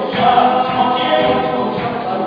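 Live church praise music: a worship band playing while a group of voices sings together.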